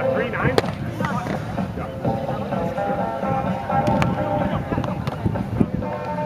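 Background music and people talking, with a few sharp smacks of a volleyball being hit, the first about half a second in and another near the four-second mark.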